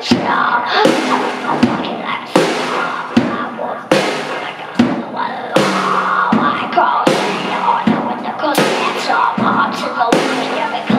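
Drum kit played in a steady beat, a deep hit about every three-quarters of a second with cymbals ringing over it.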